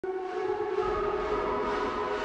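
A steady mechanical hum at one held pitch with overtones, such as a fan or motor running.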